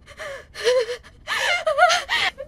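A young woman crying in gasping sobs: three breathy cries wavering in pitch, the last the longest and loudest.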